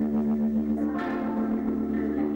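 Stoner rock band playing live: a held chord with a bell-like ring, sustained through effects, struck again about a second in.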